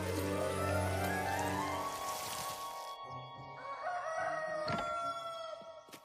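A loud swell of music and noise rising in pitch over the first few seconds as the magic beanstalk sprouts, then a rooster crows from about four seconds in, marking daybreak.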